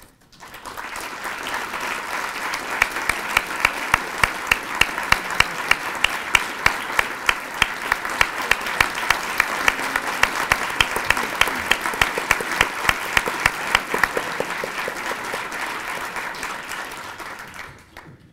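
Audience applauding, building up about half a second in and dying away near the end. Through the middle, one pair of hands close to the microphone stands out with sharp claps at about three a second.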